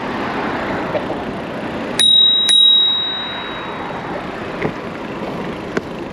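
Bicycle bell on a Brompton folding bike rung twice in quick succession, each strike ringing out clearly and fading over about a second, to warn a pedestrian walking ahead on the bike path. Steady traffic and wind noise runs underneath.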